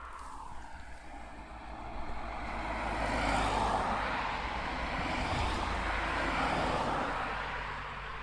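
Distant engine noise of a passing vehicle, swelling for a few seconds and fading near the end, over a low steady rumble.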